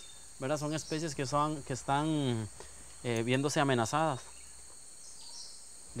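Steady, high insect chorus, typical of crickets, with a man talking over it for the first few seconds.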